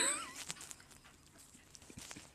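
The tail of a woman's laugh: a high, wavering squeak that fades out within the first half second, followed by a few faint clicks.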